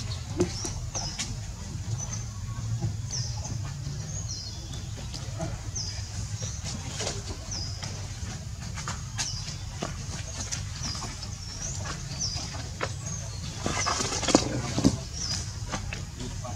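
A bird's short, high-pitched chirp repeating about once a second over a low steady hum, with scattered light rustles and knocks. A louder burst of rustling and knocks comes near the end.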